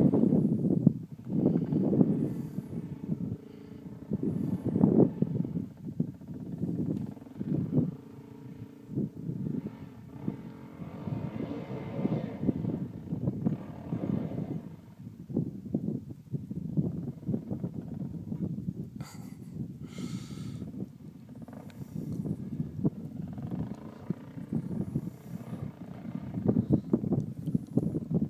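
Dirt bike engine revving and labouring up a steep hill climb, its pitch and loudness rising and falling with the throttle.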